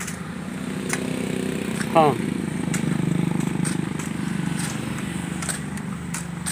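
A motor engine running steadily, swelling slightly about three seconds in, with a few faint clicks over it.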